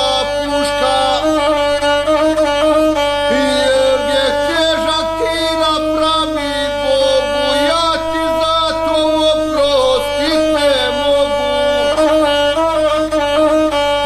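Gusle, the single-string bowed folk fiddle of epic song, played in a continuous melody with many slides and wavering ornaments.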